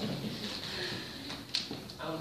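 Faint, quiet speech in a pause between spoken wedding vows, with one sharp click about one and a half seconds in.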